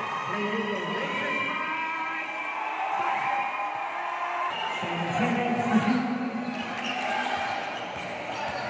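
Basketball bouncing on the hardwood court as a player dribbles, with the spectators' voices and shouts running underneath and swelling in the second half.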